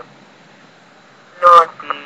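Synthesized text-to-speech voice (Microsoft Mary) saying the single word "northeast" about one and a half seconds in, over a faint steady hiss.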